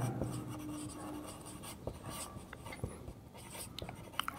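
Marker pen writing on a whiteboard: faint, irregular scratches and light taps of the felt tip.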